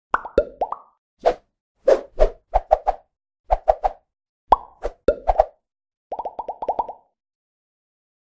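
Synthetic pop and bloop sound effects of an animated logo intro, coming in quick clusters, several with a short upward-sliding pitch. They end in a rapid run of pops that stops about a second before the end.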